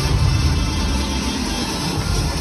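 Music with a strong bass playing over an arena's PA system.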